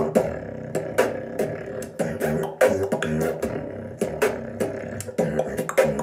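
Solo human beatboxing: a steady beat of sharp percussive mouth hits over a held, hummed tone.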